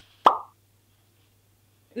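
A single short pop sound effect about a quarter second in, lasting well under half a second, then near silence with a faint low hum.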